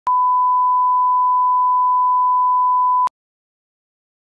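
Steady, single-pitch line-up reference tone played with colour bars at the head of a tape, about three seconds long, starting and cutting off abruptly with a click.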